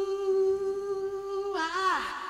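A single voice holding one long, steady note, with a short swoop up and back down in pitch near the end, then dying away in a reverberant tail.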